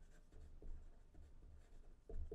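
Faint scratching of a pen writing by hand on paper, in short irregular strokes.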